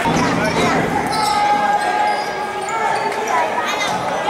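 Basketball being dribbled on a hardwood court during live play, with sneakers squeaking, players calling out and spectators' voices echoing in the hall. A cluster of high squeaks comes near the end.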